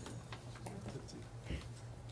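Faint scattered light clicks over a steady low electrical hum, with a soft thump about one and a half seconds in.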